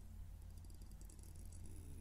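Near silence between spoken phrases: faint room tone with a low steady hum.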